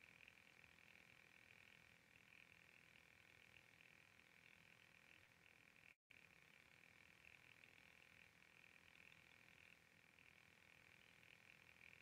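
Near silence: faint room tone with a thin, steady high-pitched hum, cutting out completely for a moment about halfway through.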